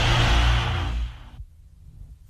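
Closing swell of a production-company logo sting: a loud sustained rush over deep bass tones. It fades out a little over a second in, leaving a near-quiet gap.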